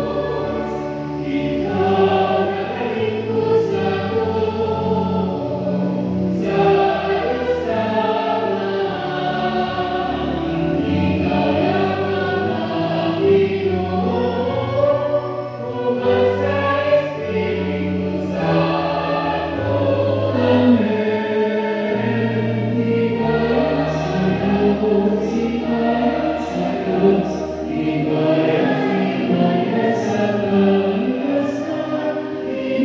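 A choir singing a slow hymn over sustained low accompaniment notes that change every second or two.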